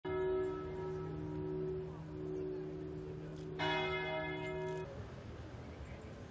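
Church bell tolling for a funeral: one stroke at the start and a second about three and a half seconds in, each ringing on, the sound cut off short near the five-second mark.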